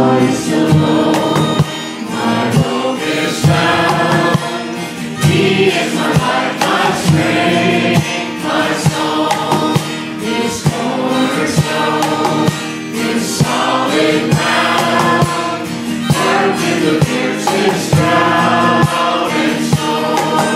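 Congregational worship song: women singing into microphones with a congregation, over a strummed acoustic guitar.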